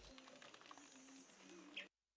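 Near silence: faint field-recording ambience with a few faint low tones, cutting to dead silence near the end.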